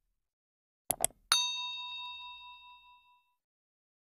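Subscribe-button animation sound effect: two quick mouse clicks about a second in, then a single notification-bell ding that rings out and fades over about two seconds.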